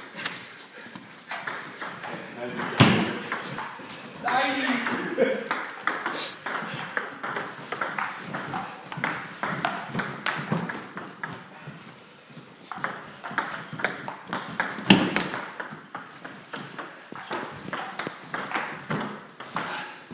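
Table tennis ball clicking repeatedly against paddles and the table during rallies, with voices in the background.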